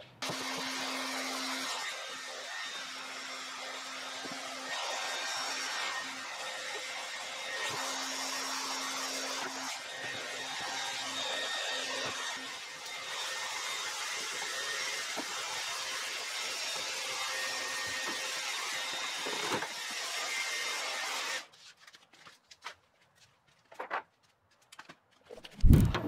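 Handheld heat gun blowing hot air onto adhesive tape to soften it: a steady hiss with a faint hum that comes and goes. It cuts off suddenly a few seconds before the end, leaving near silence with a few faint clicks, then a short knock.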